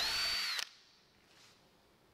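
Power drill boring a hole through plywood: a brief high motor whine for about half a second at the start, dropping in pitch as the drill stops.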